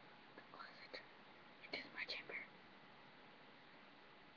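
A voice whispering a few short, faint words: one group about half a second in and another around two seconds in.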